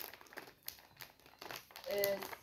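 Plastic bag crinkling in short, scattered crackles as it is squeezed and twisted by hand.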